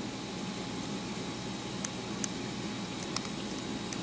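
Steady room noise with a faint hum, broken by a few faint ticks around the middle.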